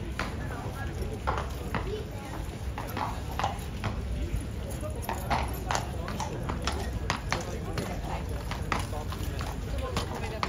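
A cavalry horse's shod hooves clip-clopping on stone paving as it shifts and steps out of its sentry box: irregular strikes that come more often in the second half.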